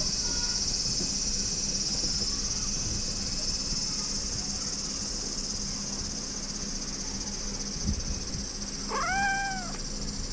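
A dozing calico cat gives one short, arching meow near the end, a sleepy reply to being petted, over a steady high drone of insects.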